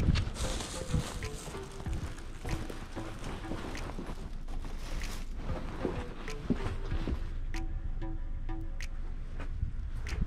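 Footsteps and handling noise as a grocery bag is carried up and set down on a porch, a steady rustle broken by scattered clicks and knocks, with music playing in the background.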